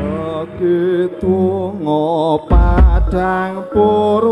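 Javanese gamelan music for a jaranan dance, with a female singer (sinden) singing a wavering, ornamented melody over it. A deep low stroke sounds about two and a half seconds in.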